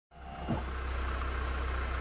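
A low steady hum fades in, with one soft thump about half a second in.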